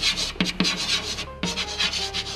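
Chalk scraping across a chalkboard as words are written, in a run of short scratchy strokes broken by a few sharp taps of the chalk on the board.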